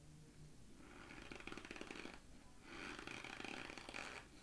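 Faint mouth sounds of chewing a spoonful of frozen cornstarch, with crunching and breathing in two stretches of about a second and a half with a short pause between.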